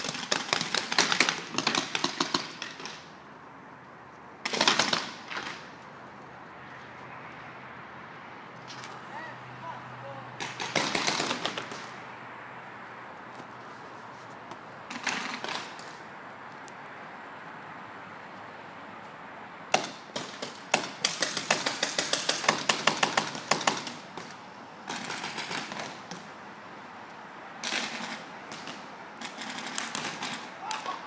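Paintball markers firing in rapid strings of shots: several separate bursts with pauses between them, the longest run about twenty seconds in.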